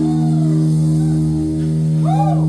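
Live electric bass and electric guitar holding a sustained chord, the guitar bending notes up and down over it, with no drum hits.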